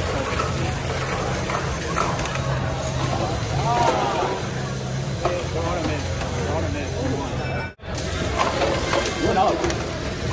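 Spectator chatter in a gymnasium over a low whirring hum from VEX competition robots' drive motors, which comes and goes in stretches of about a second as the robots run their autonomous routines. The sound cuts out for an instant near the end.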